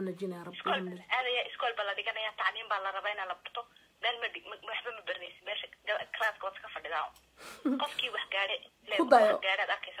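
A person talking over a telephone line, the voice narrow and thin, in quick phrases with short pauses.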